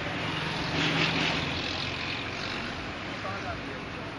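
A motor vehicle engine running close by, its noise swelling about a second in and then easing off, with faint voices in the background.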